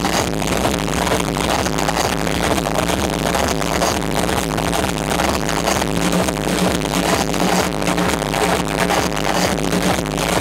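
Loud techno played over a nightclub sound system during a DJ set, with a steady driving beat.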